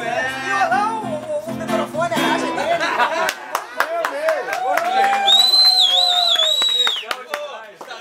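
Acoustic guitar strumming under singing voices, with the guitar stopping about three seconds in as the song ends. Then come clapping, voices and a long, high, wavering whistle.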